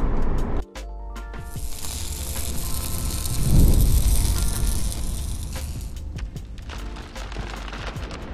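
Logo-outro sound design: music notes over a long hissing whoosh, with a deep boom swelling to its peak about three and a half seconds in. Before it, under a second of car cabin sound cuts off abruptly.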